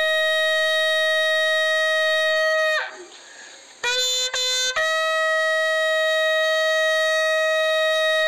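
Bugle call played as a funeral salute: a long held note that breaks off just before the three-second mark, then a few short quick notes around four seconds in, then another long held note.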